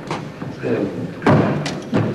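Footsteps thumping on a wooden parquet floor as a few people turn and step back into line, several separate thuds with the loudest just past the middle.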